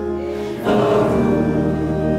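Gospel choir singing, with a louder held chord coming in just over half a second in.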